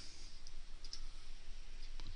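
A few faint computer keyboard and mouse clicks over a steady hiss of room noise: a value being typed into a software field.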